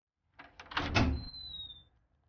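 A steel security door being unlocked and opened: a few sharp clicks, then heavier clunks of the lock and handle about a second in, followed by a brief high squeak, falling slightly in pitch, as the door swings open.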